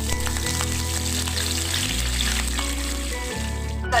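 Curry leaves and green chilli pieces sizzling in hot oil in a frying pan, a steady hiss with small crackles, over background music.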